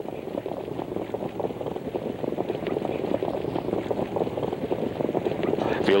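Indistinct murmur of a crowd, many voices at once with no single voice standing out, growing gradually louder.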